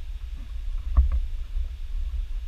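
Low rumble of wind and handling noise on a camera microphone carried by someone walking, with a single footstep thud about a second in.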